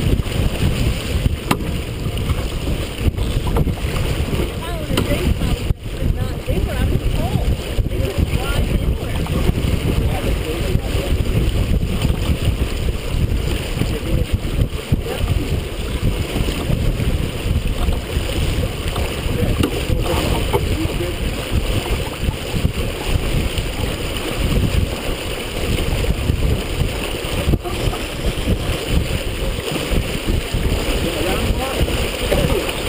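Steady rush of water and spray along the hull of a Merit 25 sailboat heeled over and sailing upwind, with wind buffeting the microphone as a heavy low rumble.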